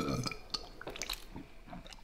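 A hand squishing through a tub of soggy, milk-soaked Fruity Pebbles cereal: scattered small wet squelches and crackles.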